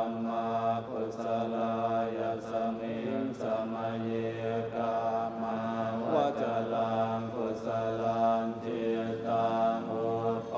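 Buddhist monks chanting together in a low, nearly level drone, the phrases held for a second or two with short breaks between them.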